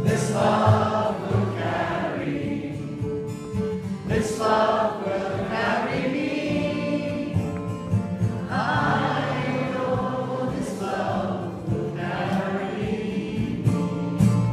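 Live acoustic folk song with many voices singing together, a crowd joining the singer.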